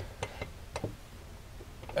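A few faint, sharp clicks in the first second as a skid-plate mounting clamp is pushed through plastic trim and hooked around a frame tube.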